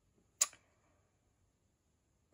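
A single short, sharp click about half a second in, then quiet.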